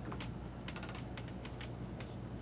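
Irregular run of light clicks from keys on a computer keyboard, over a steady low hum.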